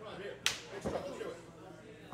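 A single sharp open-hand slap on bare skin, one wrestler striking another, about half a second in.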